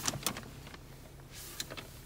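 A few light clicks from a car's dashboard controls being pressed, over a steady low hum in the cabin.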